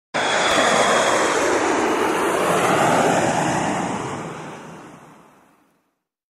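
Steady rushing noise like surf or wind, from an intro animation's sound effect. It starts abruptly and fades out smoothly over the last two seconds or so.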